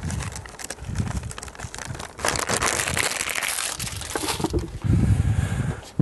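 Plastic bag crinkling as ground tiger nuts are poured and shaken out of it into a filter cup, with a denser hiss of pouring granules for about two seconds near the middle.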